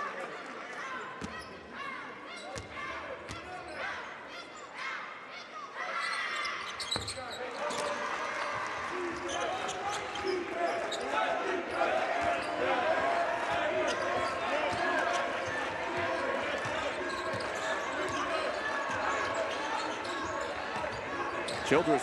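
Basketball game sound in an arena: a ball bouncing on the hardwood floor under scattered voices from players and crowd. The sound is sparser at first and grows busier and louder from about seven seconds in, once live play starts.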